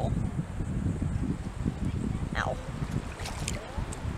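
Wind buffeting the camera microphone on an open beach, a steady low rumble. About two and a half seconds in, a woman gives one short cry of pain, 'Ow'.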